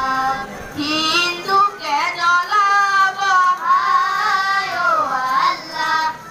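A boy singing solo into a microphone, in long held phrases that waver and bend in pitch.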